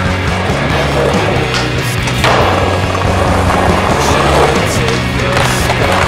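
Skateboard riding on pavement: a sharp board snap about two seconds in, then the rough rolling of urethane wheels for a couple of seconds, with further clacks of the board, over a rock music soundtrack.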